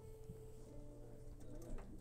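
Quiet, sustained electric guitar notes over a steady amplifier hum: one held note, then a lower one about a second in, with a few faint clicks.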